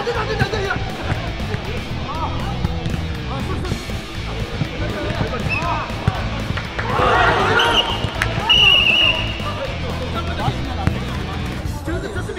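Jokgu ball being kicked and bouncing on a dirt court during a rally, sharp knocks at irregular intervals. Players shout about seven seconds in, over background music.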